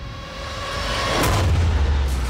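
Film sound design of an earthquake: a deep rumble swells as a road breaks apart, with a crash a little over a second in, over a held musical tone.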